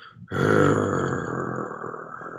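A man's voice imitating the rumble of thunder: a rough, growling rumble that starts just after a short pause and slowly fades.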